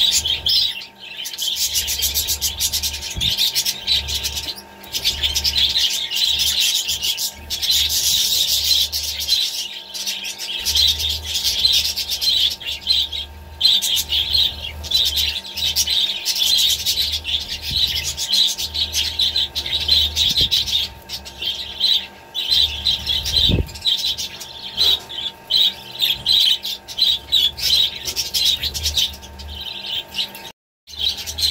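Budgerigars chattering and warbling in a continuous run of fast, high chirps with only brief breaks, typical budgie courtship chatter from a pair billing beak-to-beak.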